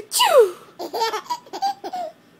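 Baby laughing: a high squeal that falls steeply in pitch, then a run of short laugh bursts.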